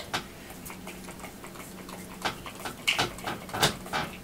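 A few short clicks and knocks from handling a small plastic spray bottle, over a faint steady low hum.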